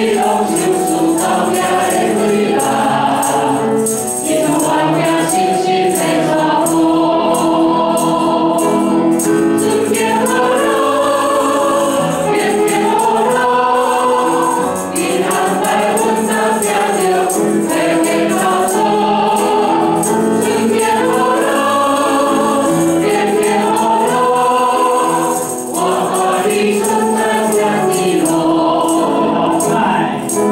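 A small group of mixed men's and women's voices singing a Mandarin worship hymn through microphones, with piano accompaniment and a light percussive rhythm.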